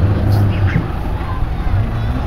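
Race cars' engines running on the track, a loud steady low drone.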